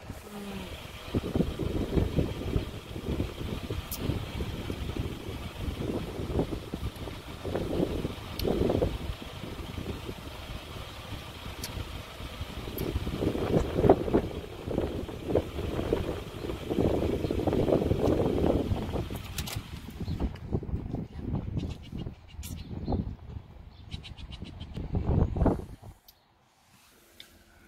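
Wind buffeting a phone's microphone held out of a moving car's open window, a gusty rumble that swells and eases, over the car's road noise.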